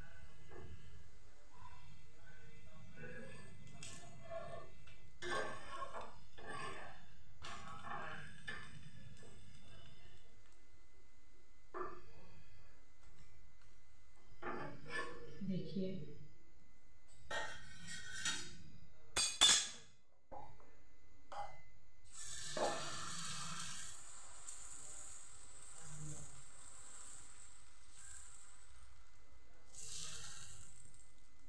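Metal spatula scraping and clinking on an iron tawa while a moong dal chilla is loosened and flipped, with a loud sharp clink about two-thirds through. After that, a steady sizzling hiss of fresh batter cooking on the hot griddle.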